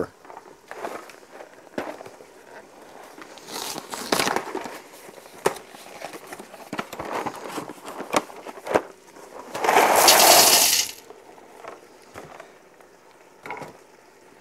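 Dry rigatoni and its cardboard box being handled and emptied into an Instant Pot's steel inner pot: scattered clicks and knocks and a crinkly stretch, then a loud rush of pasta lasting a little over a second about ten seconds in.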